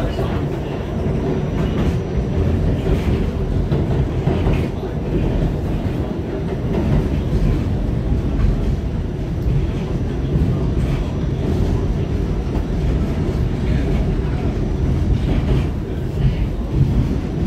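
Inside an R68 New York subway car running at speed: a steady, loud low rumble of wheels on track, with a few faint clicks.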